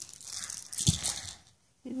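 Rustling of a soft baby toy being handled, with a single dull knock about a second in.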